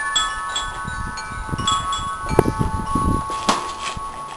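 Wind chimes ringing, several overlapping tones held steadily with scattered higher tinkles. A low rumbling runs through the middle, and two sharp knocks come about halfway through and near the end.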